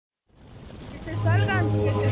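Sound fading in from silence to a low, steady hum, with a brief stretch of a person's voice over it.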